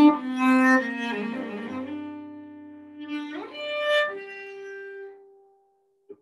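Solo cello playing a slow bowed passage of sustained notes. About three seconds in it slides up to a higher note, which is held and fades away near the end.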